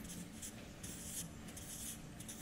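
Marker pen writing on a whiteboard: several short, faint scratchy strokes as small circles are drawn.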